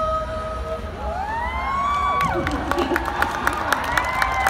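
Concert crowd cheering and screaming as a song's final held note fades out. Scattered clapping joins in about two seconds in.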